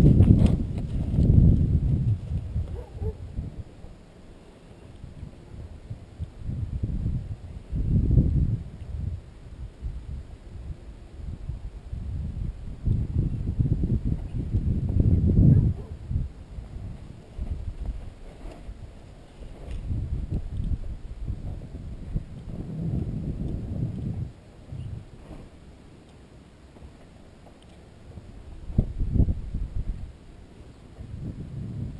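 A horse stepping and shuffling in loose sand: dull, low hoof thuds that come in irregular surges, with a few sharper knocks in the second half.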